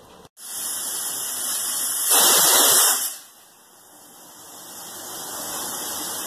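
Aluminium pressure cooker hissing steam at its weight valve, with a louder burst of venting about two seconds in that lasts about a second, then a quieter hiss building again; the cooker is at pressure and the dish is cooked.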